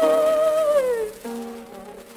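1904 acoustic-era Victor shellac disc recording of an operatic soprano with piano: a long held high note slides down and ends about a second in, then quieter piano chords carry on, all over the record's surface hiss.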